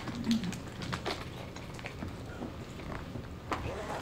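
Scattered faint clicks and small knocks over low room noise.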